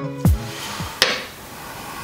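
Background music with deep drum thumps ends within the first half second. About a second in there is a single sharp click as the cam plate is pulled free of the engine's cam chest.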